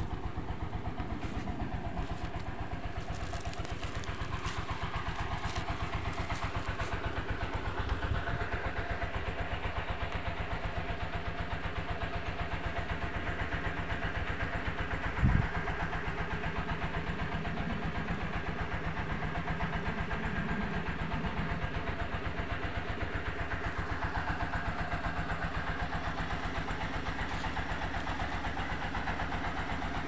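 Small single-cylinder diesel water-pump engines (dompeng) running steadily, drawing water to irrigate rice fields, with an even, rapid thudding pulse. A brief sharp knock about halfway through.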